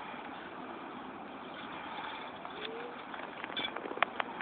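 Steady outdoor background noise, with one faint short rising call about two and a half seconds in and a few light clicks near the end.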